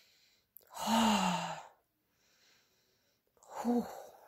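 A woman's long, breathy sigh with a falling pitch about a second in, a sigh of pleasure at the strong scent of the lemon soap she is smelling. A short voiced 'oh' comes near the end.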